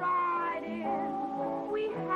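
A woman singing a song with held notes over a small band accompaniment.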